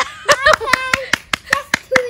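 Hands clapping in quick, even claps, about five a second, with a voice calling out over them.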